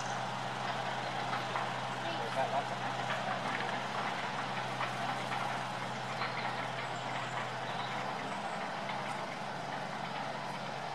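Steady low engine hum, with faint voices in the background.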